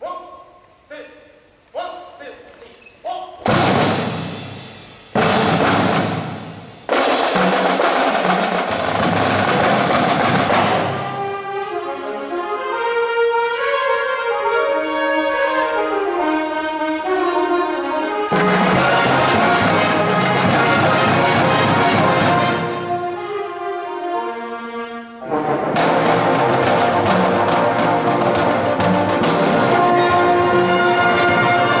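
A marching band's brass and percussion playing a fanfare-like concert piece. It opens with short detached chords, each ringing out in a large hall, then builds into loud full-band chords. A quieter moving melodic passage in the middle gives way to loud full-band playing again near the end.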